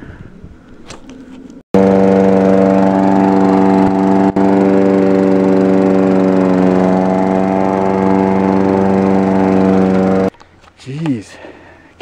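Husqvarna walk-behind rotary lawn mower's small engine running steadily, its pitch dipping slightly midway. It starts abruptly about two seconds in and cuts off abruptly about ten seconds in.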